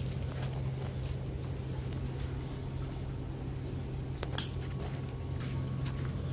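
Leaves rustling and a few sharp snaps as plants are handled and pushed through while walking in dense garden growth. A steady low hum runs underneath throughout.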